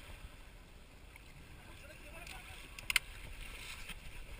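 Faint wind and water noise around a small inflatable boat on calm sea, a low even rumble, with one short sharp sound about three seconds in.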